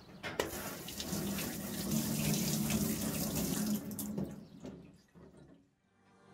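Tap water running into a sink basin as a knife blade is rinsed of whetstone slurry. The water rushes steadily, then fades away about four and a half seconds in.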